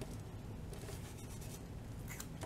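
Faint rustling and scratching of paper as a small planner sticker is peeled from its backing and handled between the fingers, mostly in the middle second.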